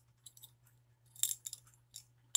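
A few faint clicks and light rattles of a clear acrylic snap-in heart photo keychain being handled, its plastic pieces and key ring knocking together, mostly about a second in.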